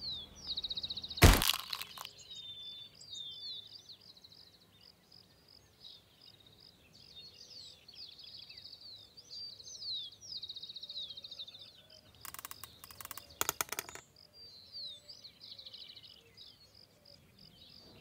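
Songbirds chirp and trill steadily in the background. About a second in there is a single sharp crack, the loudest sound. About twelve seconds in comes a quick run of clicks from an old rifle's action as the trigger is worked.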